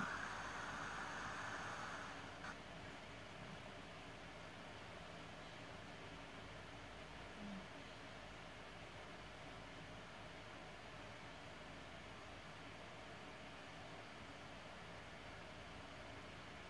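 Faint steady hiss of dead air while the broadcast microphone is cut, a little stronger for the first two seconds, with one tiny blip about seven and a half seconds in.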